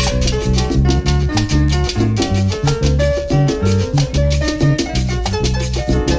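Salsa music in an instrumental stretch without singing: a moving bass line and held instrument notes over steady percussion strokes.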